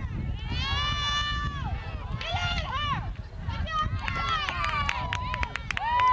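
Several high-pitched voices shouting and yelling in long drawn-out calls during a field hockey game, with a run of sharp clicks about two-thirds of the way through and a steady low rumble underneath.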